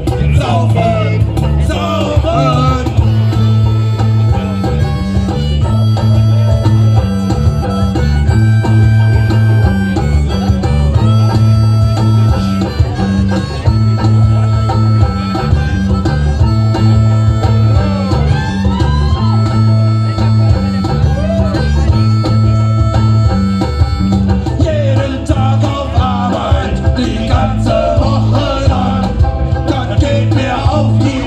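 A live band playing loud rock music: electric guitar, banjo, drums and a stepping bass line. Sung vocals come near the start and again near the end, with an instrumental stretch of long held lead notes in between.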